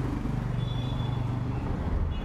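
Busy city street traffic: a motor vehicle's engine hums steadily close by, with a brief faint high-pitched tone near the middle.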